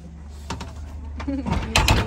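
Wire pet cage rattling and clattering, loudest near the end, over a steady low rumble.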